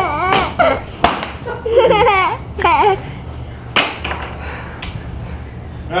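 People laughing and whooping without words, in bursts near the start and again about two seconds in. A few sharp knocks cut through, about a second in and near four seconds.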